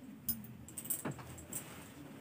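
Metal bangles clinking and jangling in a few short bursts as a saree is lifted and handled, over a low steady hum.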